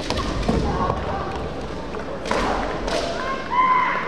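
Kendo fencers clashing: a sharp stamp and shinai strike on the wooden floor at the start, more sharp hits a couple of seconds later, and kiai shouts, ending in one long drawn-out shout.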